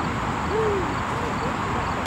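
A bird's low hooting call: one longer note that rises and falls, then a few shorter hoots, over steady outdoor background noise.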